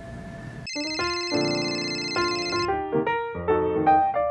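Phone ringtone: a bright electronic melody of separate keyboard-like notes, starting about a second in.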